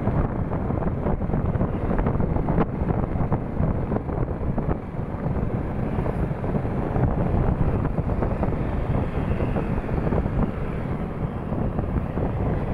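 Wind rushing over the microphone of a moving Yamaha motorcycle, with the bike's engine and road noise mixed in as a steady rumble.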